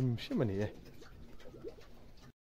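A man's voice for the first moment, then faint cooing of pigeons, a few short low coos near the end.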